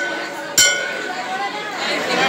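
A temple bell struck and ringing with a bright metallic tone: the ring of one stroke fading at the start and a fresh stroke about half a second in, over crowd chatter.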